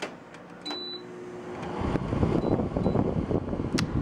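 Room air conditioner responding to a press of its control-panel button: a short electronic beep, then a low hum as the unit starts. About two seconds in a louder rough, rattling mechanical noise follows; this is the weird noise the owner cannot explain and suspects may come from a dirty air filter.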